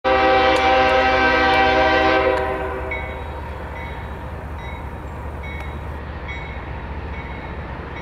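Locomotive air horn of CSX 5237, a GE ES40DC, sounding one loud chord that cuts off a little over two seconds in. A steady low rumble of the approaching train carries on after it.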